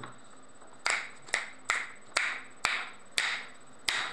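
A series of seven sharp percussive hits, like claps or knocks, at uneven intervals about half a second apart, each with a short ringing tail.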